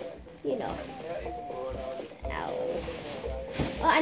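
Faint voices talking in the background, quieter than the nearby close speech.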